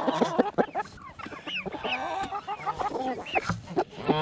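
A flock of chickens clucking close to the microphone, many short calls overlapping one another.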